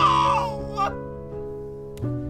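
A man's drawn-out wavering wail, about a second long, in an exaggerated show of despair; background music plays under it and carries on alone afterwards.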